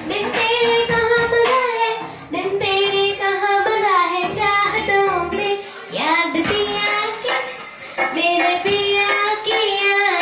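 A young girl singing solo into a microphone over a PA, with long held notes that slide between pitches and short breaks between phrases.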